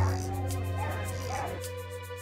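Background music with a dog whining over it, a wavering high-pitched whine that lasts about a second and a half and then stops.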